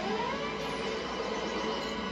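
A TV-show sci-fi weapon sound effect, a rising electronic tone that then holds, over background music, as the magma beam is fired; heard through a TV's speaker.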